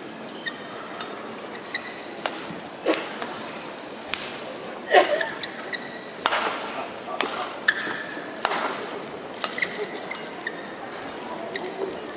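Badminton rally: rackets striking the shuttlecock in sharp, irregular cracks and players' shoes squeaking on the court, over a steady murmur from a large crowd. The loudest burst of hits comes about five seconds in.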